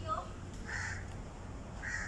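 A bird calling twice, short calls about a second apart, over a steady low background hum.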